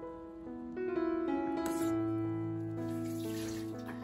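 Soft piano-like background music over a pot of soup at a rolling boil. The bubbling water's hiss swells about halfway through.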